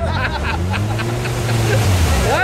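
Side-by-side UTV engine running with a steady low drone that rises gently in pitch and eases back, the vehicle stuck in deep mud.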